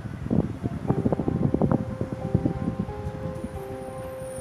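Irregular rustling and bumping noise on a handheld microphone for the first two seconds or so, then soft held music notes come in and sustain.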